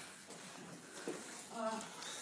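Low, even background noise with a man's brief hesitant "uh" near the end.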